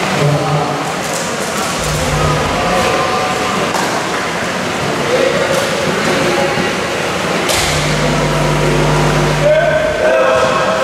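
Voices of players and spectators echoing in a large indoor sports hall. Twice a steady low drone comes in, briefly about two seconds in and for about two seconds near the end.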